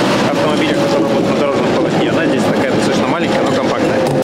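A man talking over loud, steady vehicle and street noise, with a steady hum held through most of it.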